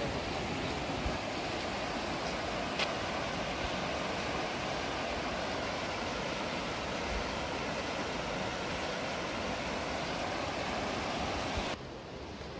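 Steady rushing of water over the rocks of a mountain stream, cutting off suddenly near the end.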